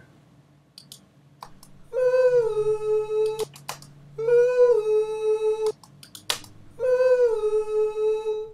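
Three audio clips cut from a band's multitrack recording, played back one after another. Each is a single sustained note, about a second and a half long, that dips slightly in pitch at its start, holds steady and then cuts off abruptly. Short clicks fall in the gaps between the notes.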